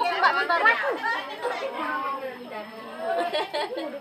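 Overlapping chatter of several women talking at once.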